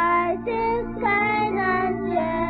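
A children's song: voices singing a melody over instrumental accompaniment, with the notes changing about every half second. A new sung phrase begins right at the start, after a brief dip.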